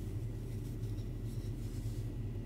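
Soft scratchy rustling of yarn drawn over a crochet hook and through the fingers, a few faint strokes, over a steady low hum.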